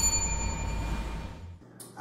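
A bell-like ding sound effect: a struck chime ringing with several clear tones that fade away, over a low hum that cuts off about a second and a half in.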